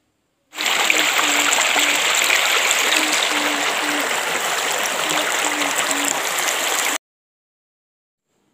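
Shallow, fast-flowing muddy water rushing over a stony bed, recorded close up: a loud, steady rush that starts about half a second in and cuts off suddenly about a second before the end.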